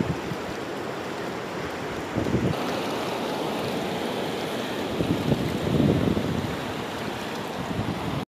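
Fast, swollen river rushing steadily over rocks, with low gusts of wind buffeting the microphone about two seconds in and again for a second or so near the end.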